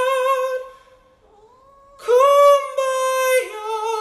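High held vocal notes: a long sung note fades out about half a second in. A short, quiet rising meow from a cat follows in the gap. Then a loud high note starts halfway through, sliding up at its start and stepping down in pitch near the end.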